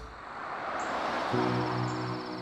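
Night-time crickets trilling steadily, joined a little over a second in by a low, steady hum. A soft rushing wash fills the first second.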